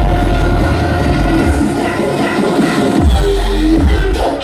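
Loud live electronic bass music played over a festival sound system, heard from within the crowd. The heavy bass drops out for about a second past the middle and comes back in.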